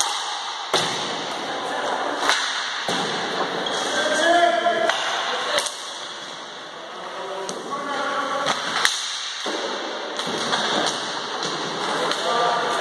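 Ball hockey play on a hard sports hall floor: sharp clacks of sticks and ball, repeated irregularly and echoing in the hall, with players shouting now and then.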